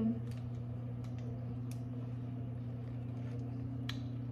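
A steady low electrical-type hum, with a few faint soft clicks while a person drinks from a plastic sports-drink bottle.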